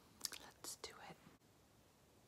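A woman whispering a few soft words under her breath, cut off suddenly about a second and a half in.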